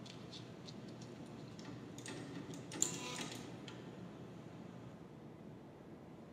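Faint, irregular clicks and rattling from a rat working the lever of a home-built operant conditioning chamber on a fixed-ratio schedule, with a denser, louder clatter about two to three and a half seconds in.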